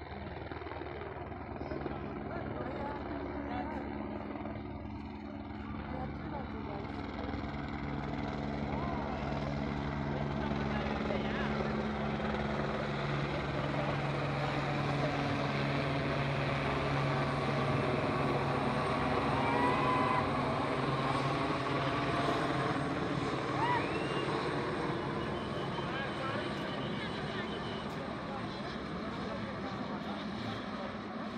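Helicopter flying low overhead, its rotor and engine sound building to a peak past the middle and then easing slightly, with voices underneath.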